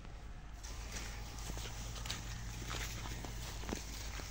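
Footsteps of a donkey and a person walking over dry crop stubble: irregular crunching steps and hoof clicks that begin about half a second in.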